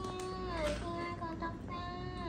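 A high, singing voice holding long steady notes that each slide down in pitch at the end.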